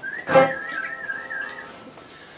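A whistled note, held for about a second and a half with a wavering pitch, over the faint ringing of acoustic guitar strings. A short strum or knock comes near the start.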